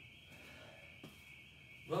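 Quiet room tone with a steady high-pitched hiss, one faint tap about a second in, and a man starting to speak at the very end.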